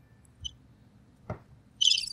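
A short click about a second in, then near the end a sound effect from a sound-effects pad starts: high, rapidly pulsing chirps. It is the wrong effect, not the 'ooh' that was asked for.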